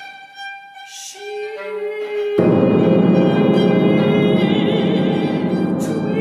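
Contemporary classical chamber ensemble music: a few quiet held notes, then about two and a half seconds in the whole ensemble enters loudly and plays on.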